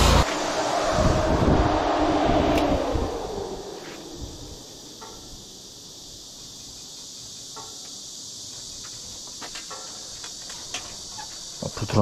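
Briggs & Stratton Vanguard engine and high-pressure pump of a sewer jetter running with the water jet spraying, its pitch falling as the rpm is brought down, fading out about three seconds in. After that only a faint steady high hiss remains, with a few small clicks.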